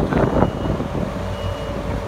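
A farm machine's reversing alarm gives one high beep about a second in, over its running engine.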